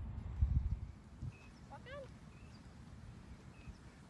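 Faint hoofbeats of a mule moving over deep, loose arena sand, with a low rumble of wind on the microphone in the first second. A bird calls once, about halfway through.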